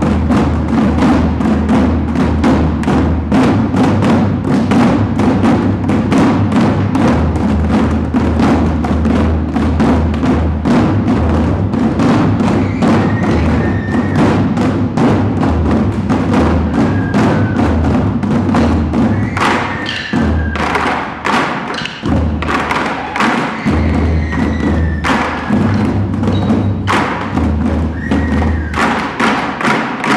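Ensemble taiko drumming: several players beat drums with wooden sticks in a fast, driving rhythm. The drums give deep thuds under a dense run of sharp strikes, and the playing stops right at the end.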